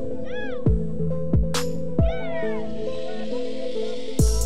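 Background music track with regular drum strikes and held notes, plus two short sliding sounds that rise and then fall in pitch, one about half a second in and one about two seconds in.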